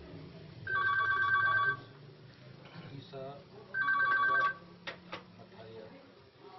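A telephone ringing twice with a rapid warbling two-tone trill, each ring about a second long and about two seconds apart, followed by two sharp clicks.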